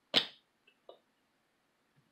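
A plastic squeeze bottle being handled and capped: one short, sharp burst just after the start, then two faint clicks a little before the one-second mark.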